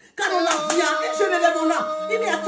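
A woman's loud, drawn-out exclamation, held on one pitch for over a second, with a few sharp hand claps in its first second.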